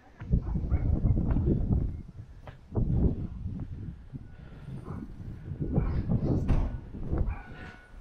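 Footsteps on a concrete driveway and irregular low rumbling from wind buffeting a head-mounted camera's microphone, with scattered small knocks.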